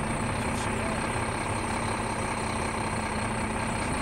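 Car engine idling with a steady low hum.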